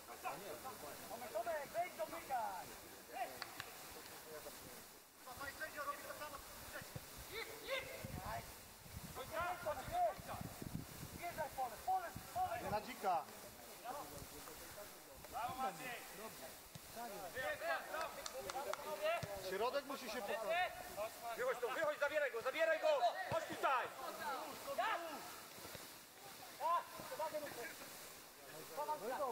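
Voices of footballers and onlookers calling and shouting around the pitch, several at a time, with no clear words. The shouting is busiest in the second half.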